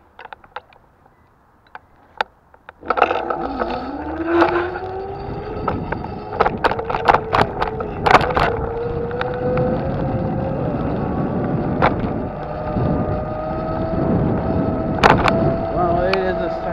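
A few faint clicks, then about three seconds in a vehicle sets off: a motor whine climbs in pitch over several seconds and then holds steady over rough rolling road noise, with sharp clicks and rattles.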